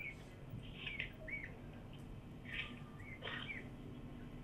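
Faint, short, high chirps of a small bird, about half a dozen scattered through a few seconds, over a low steady background hum.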